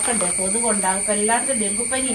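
A woman talking in a language the transcript does not capture, over a steady high-pitched hiss.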